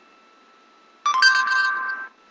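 An electronic tone from the Google Search app on an iPod touch, through the device's small speaker. It starts sharply about a second in, after a quiet pause, and holds two steady notes for about a second.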